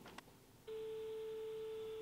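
A steady, single-pitched telephone tone from a room phone's handset as a call is placed. It starts abruptly about two-thirds of a second in, after near silence, and holds level.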